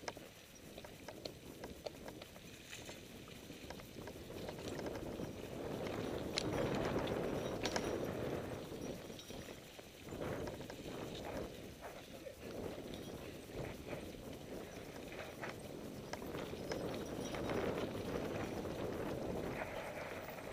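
Mountain bike ridden down a dirt singletrack, heard from the rider's own camera: tyres rolling and crunching over the dirt, with scattered rattles and knocks from bumps. The rolling noise swells louder in the middle and again near the end.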